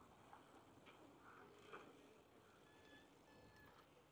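Near silence: faint outdoor ambience, with a few faint, brief high tones in the second half.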